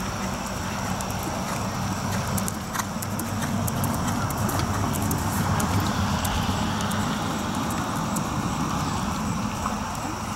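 A steady low rumble and hiss of open-air noise, with the soft hoofbeats of a horse trotting on sand arena footing.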